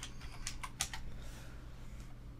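Computer keyboard typing: a quick run of keystrokes in the first second, then it stops. A faint low hum runs underneath.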